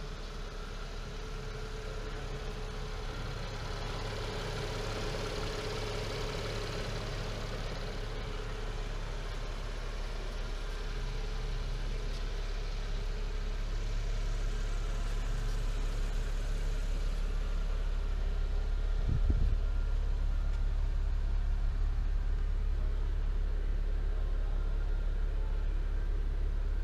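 Cadillac CT6 engine idling steadily, growing gradually louder as the microphone moves in through the open door into the cabin, with one short knock about three-quarters of the way through.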